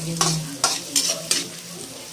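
A metal spatula stirs and scrapes chopped garlic, onion and ginger sizzling in oil in a steel wok. About four scraping strokes come in the first second and a half, over a steady frying hiss.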